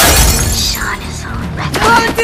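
A sudden crash sound effect dropped into a dancehall mix at a change of track. Its noisy tail fades over about a second and a half, and the next beat comes in near the end.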